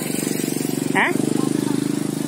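A small engine running steadily at an even, unchanging pitch, with a quick regular pulse.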